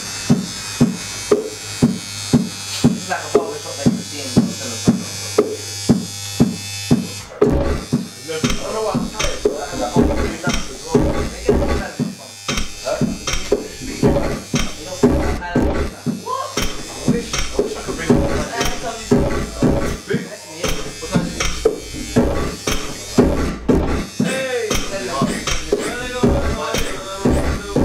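Grime beat played on an MPC-style pad sampler, built from sampled barber-shop sounds such as brushes and scissors: a repeating hit about twice a second, joined about seven and a half seconds in by a bass line and a fuller drum pattern.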